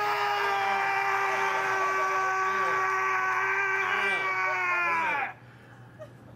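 A man letting out one long, high, held scream at a near-constant pitch, which cuts off suddenly about five seconds in.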